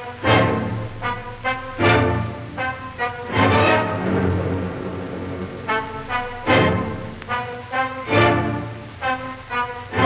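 Bells tolling over the orchestral film score, struck in a repeating pattern: a loud ringing stroke about every second and a half, with lighter strokes between, each ringing out before the next.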